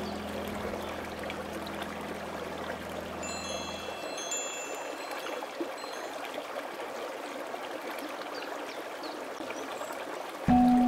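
Steady running water, like a stream, with a few soft high chime notes ringing briefly about three to four seconds in. A low held note of the background music fades out about four seconds in, leaving only the water.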